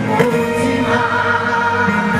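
Live gospel music: voices singing over a band, with long held notes.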